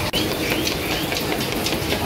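Busy street noise in a crowded market, with wind rumbling on the microphone. There is a brief dropout just at the start.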